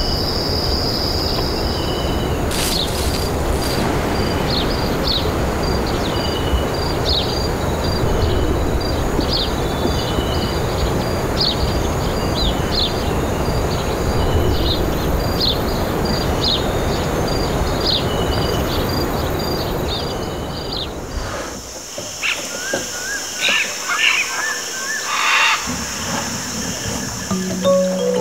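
Nature ambience: short, repeated bird calls over a steady low rumble. About 21 seconds in, the rumble falls away, leaving a steady high insect drone and scattered calls. Music comes in right at the end.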